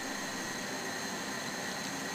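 Steady rushing hiss of a kitchen cooker-hood extractor fan running, with faint steady high whines over it.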